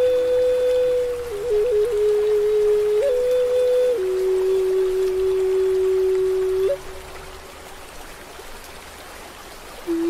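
Native American flute playing a slow melody of long held notes, with a quick flutter of ornaments about a second and a half in and a step down to a lower held note about four seconds in. Running water sounds steadily underneath. The flute stops about seven seconds in, leaving only the water.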